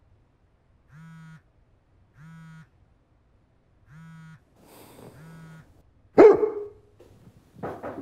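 Four short buzzing tones in two pairs, then a loud thud about six seconds in, followed near the end by a fast run of knocking, about five knocks a second.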